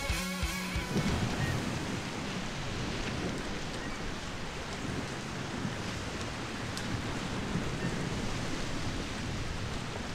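Guitar music ends about a second in, followed by a steady rushing wash of ocean surf.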